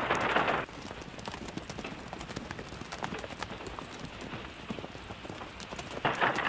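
Horses' hooves clip-clopping in an uneven patter of hoofbeats. A louder rush of noise cuts off under a second in.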